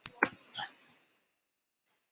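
A few computer keyboard keystrokes, typing a word, in the first second, then dead silence.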